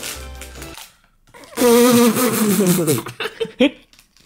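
Background music that stops about a second in. After a short gap, a young man gives a loud, drawn-out vocal sound that holds and then falls in pitch, followed by a few brief laughs.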